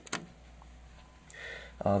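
A short sharp click at the very start, then a quiet pause with faint room tone and a low steady hum, ending with a man's hesitant 'uh'.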